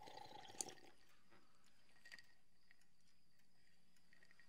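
Near silence: quiet room tone with a few faint small ticks and sips as a man drinks from a glass of water, the sharpest about half a second in.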